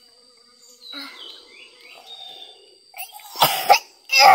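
A person coughing close by, two rough coughs in quick succession near the end.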